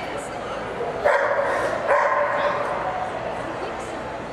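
A Nova Scotia duck tolling retriever gives two loud barks, about a second in and again just before two seconds, each lasting under a second.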